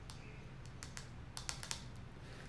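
Faint, scattered light clicks, about half a dozen and most of them in the second half, of long fingernails tapping on tarot cards laid out on a table.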